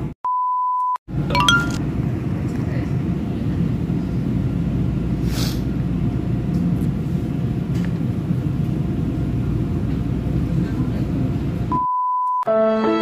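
Passenger train running, heard from inside the carriage as a steady low rumble. A short steady beep sounds just after the start and another just before the end.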